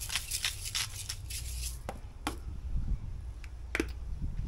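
Hand salt grinder being twisted over a fish: a quick run of crisp, gritty grinding strokes, then a couple of single clicks near the end.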